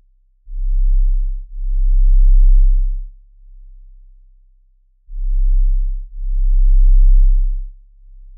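Deep sub-bass sine-wave notes from a TidalCycles synth, nothing else above them. A pair of long low notes, about one and one and a half seconds long, comes in twice, about four and a half seconds apart, with a faint fading low hum between the pairs.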